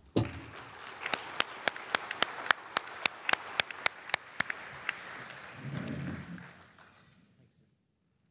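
Audience applauding, with one pair of hands near the microphone clapping sharply and evenly, about three to four claps a second. The applause dies away about seven seconds in.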